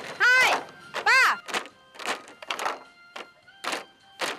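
Bamboo poles of a Vietnamese bamboo dance (nhảy sạp) knocking together in a running series of sharp clacks over music. In the first second or so come two short rising-and-falling pitched whoops.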